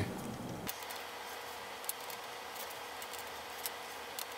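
A few faint, scattered small clicks of lead pellets being pressed into the Gamo Swarm Maxxim's plastic rotary magazine and the clip being turned to the next hole, over a steady low hiss.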